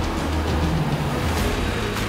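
Self-propelled Grimme potato harvester running in the field, its engine and machinery a steady low drone, mixed under background music.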